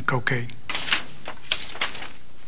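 A man's voice trails off at the end of a sentence, followed by a few faint clicks and brief rustling noises.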